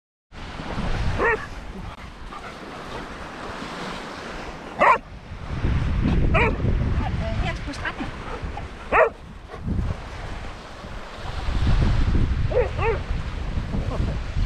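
A dog barking, about five short barks spread a few seconds apart, over gusts of wind rumbling on the microphone and the wash of small waves.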